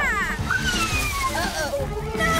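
Cartoon soundtrack: a rushing, watery splash effect with a long falling whistle and warbling squiggly tones over background music.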